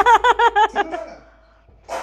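A burst of high-pitched laughter, about eight quick 'ha' pulses a second, trailing off within about a second.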